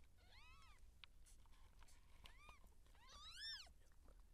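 Cat mewing: three short, high-pitched calls that rise and fall in pitch, the last the loudest, near the end.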